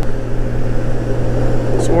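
Honda GL1800 Goldwing's flat-six engine running at a steady cruise as a constant low drone, mixed with wind and road noise.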